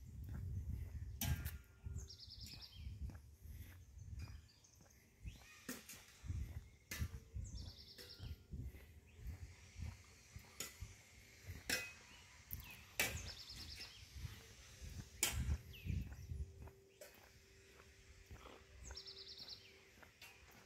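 Footsteps on a paved path with quiet outdoor background, and a short, high bird call of rapid repeated notes heard four times, about every five to six seconds.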